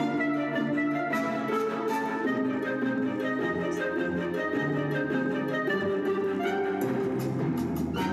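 Orchestral music playing from a Bose Wave Music System IV's CD player at half volume, at a steady level.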